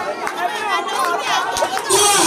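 Chatter of a congregation, many voices talking and calling out at once and overlapping, with a few short sharp clicks among them.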